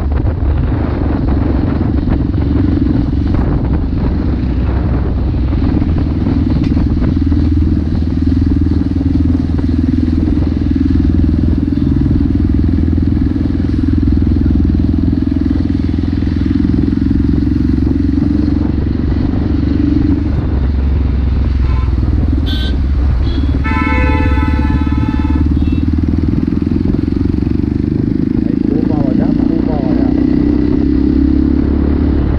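Motorcycle engine running steadily under way, heard from the rider's position. About 24 seconds in, a vehicle horn sounds for about a second and a half.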